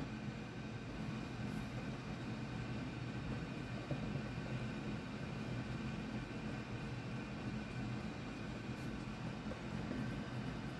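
Steady background hum and hiss of the room, with no distinct sounds standing out.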